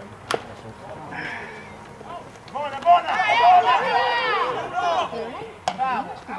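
A single sharp crack as a pitched baseball reaches home plate, a moment after the pitcher's release. A little later, high voices shout and call out loudly for a few seconds.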